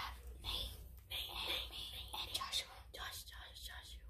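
Children whispering in short breathy phrases over a low steady hum.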